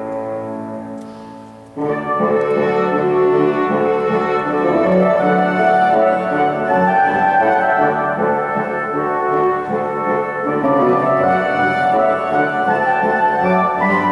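Brass-like orchestral music played on tablet music apps. A held chord fades, then a louder full passage of sustained chords enters abruptly about two seconds in.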